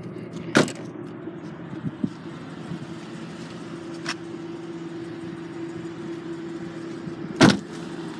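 A car's trunk lid slamming shut under a second in and a car door slamming shut near the end, two sharp thuds over a steady low hum.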